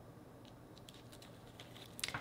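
Tarot cards handled in the hands: a run of faint, light clicks of card edges, starting about half a second in.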